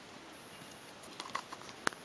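Hooves of a trotting Thoroughbred horse on a sand arena: a few soft footfalls and sharp clicks in the second half, over steady hiss.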